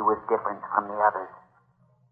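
A man's voice from an old radio drama recording, over a low steady hum; the voice stops about a second and a half in.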